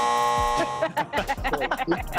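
A steady electronic buzzer tone, the game-show kind, held for about the first second and then cut off, followed by laughter.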